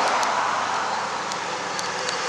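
Steady outdoor background noise, an even rushing hiss with a faint low hum beneath it.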